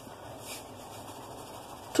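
Pot of salted water at a rolling boil, bubbling steadily as salt is poured in.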